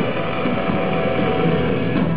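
Gothic metal band playing live, loud, mostly a held, droning chord with little drumming, recorded on an audience camera whose sound is dull and lacks treble.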